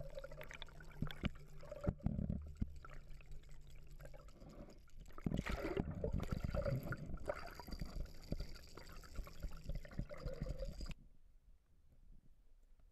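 Water rushing and bubbling around an underwater camera as it is towed, full of small crackles, with a low steady hum under it for the first few seconds. It grows louder with a burst of bubbles about five seconds in and cuts off suddenly near the end.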